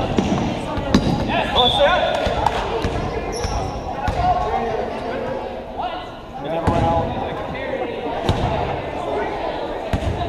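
Basketball game sounds in a gym: players and spectators calling out, with a basketball bouncing on the hardwood floor a few times.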